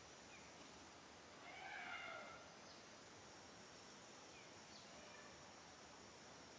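Faint outdoor quiet with a steady high hiss, and one short pitched call from a macaque about a second and a half in, rising and falling over under a second.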